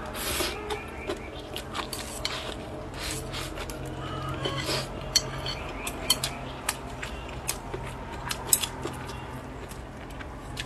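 Close-up eating sounds: a mouthful being chewed, and wooden chopsticks clicking and scraping against a glazed ceramic plate as food is picked up, the sharp clicks coming more often in the second half.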